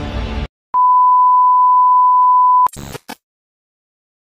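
Music cuts off about half a second in. After a short gap comes a steady, loud electronic beep, one unwavering tone held for about two seconds, followed by two brief bursts of noise.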